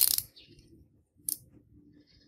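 Utility knife slitting the plastic shrink wrap along the edge of a vinyl LP jacket: a sharp, scratchy burst, then a shorter one a little over a second later.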